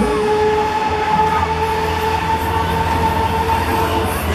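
Break Dancer fairground ride running at speed: a loud, steady rumble overlaid with high, held tones.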